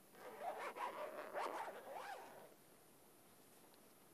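Zipper of a soft guitar gig bag being pulled open: a rasping run, wavering in pitch, that lasts about two seconds and stops around halfway through.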